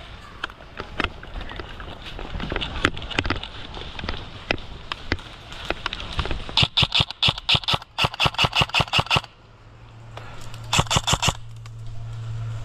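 Airsoft guns firing: scattered single shots, then two rapid bursts of sharp shots, about seven a second, in the middle, and a short burst near the end.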